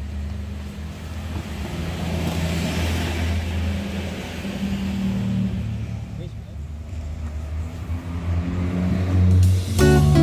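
A motor vehicle engine running with a low, steady hum, the noise swelling and easing as traffic passes. Music comes in near the end.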